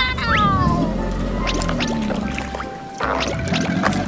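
Background music with pitched tones sliding downward just after the start, a few short clicks in the middle, and a brief noisy burst about three seconds in.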